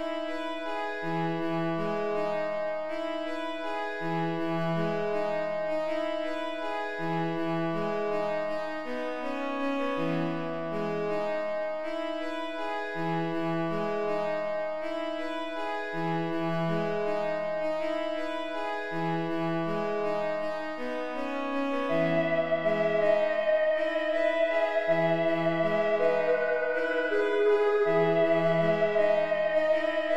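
Slow instrumental music: soft sustained chords with a low note repeating about every two seconds. About 22 seconds in, a wavering lead melody enters and the music grows louder.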